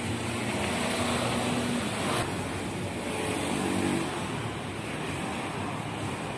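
Road traffic: motor vehicle engines passing, swelling twice, with one sharp click about two seconds in.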